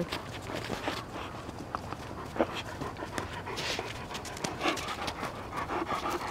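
A Central Asian Shepherd puppy breathing close by: faint panting and sniffing in short, irregularly spaced puffs.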